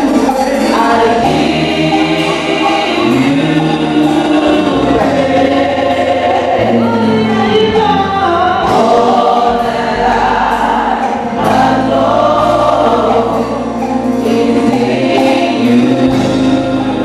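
A church choir singing a gospel hymn together, with a bass line underneath that moves in steps from note to note.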